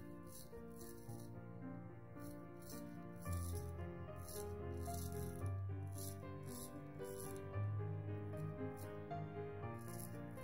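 Short scraping strokes of a full hollow ground carbon steel straight razor cutting through lathered stubble, coming in quick runs of two to four strokes. Background music with sustained notes and a bass line plays throughout, with the bass swelling about a third of the way in.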